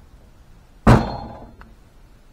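A cordless power tool set down on a steel workbench: one sharp thunk about a second in, with a brief ringing tail.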